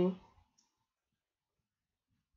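The tail of a spoken word, then near silence with a single faint click about half a second in.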